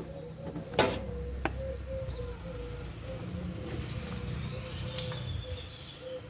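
A metal spoon knocking a few times against an aluminium stockpot of boiling beef bones, the loudest knock about a second in, over a low rumble that fades out toward the end and a faint steady hum.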